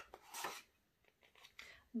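A picture-book page being turned by hand: two brief, soft paper rustles.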